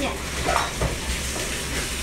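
Garlic slices sizzling in hot oil in a wok, stirred with a spatula that scrapes the pan a few times about half a second to a second in.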